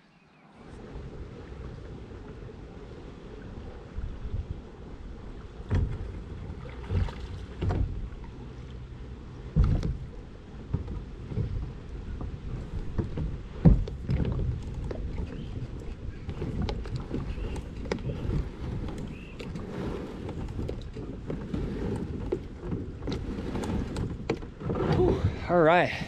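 Plastic fishing kayak moving on the water: a steady low rumble of water and wind, with scattered knocks and thumps on the hull, the loudest about 14 seconds in.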